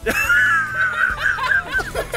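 A high-pitched, squealing laugh from a child, held for nearly two seconds with a wavering pitch and breaking into short bursts near the end.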